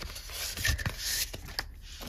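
Hands shuffling and rubbing cardboard eyeshadow palettes and other makeup packaging in a box, with a few light knocks.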